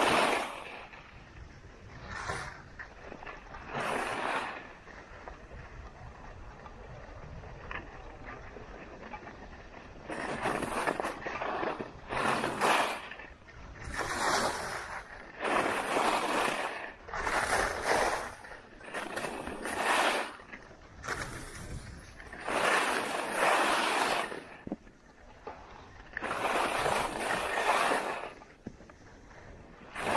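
Ski edges scraping across firm groomed snow with each turn. A few scrapes and a quieter glide at first, then a steady run of quick turns, a scrape about every second and a half.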